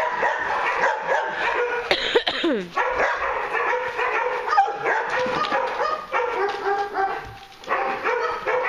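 Several dogs barking and yipping over one another in a near-continuous chorus, with one yelp about two seconds in that falls sharply in pitch.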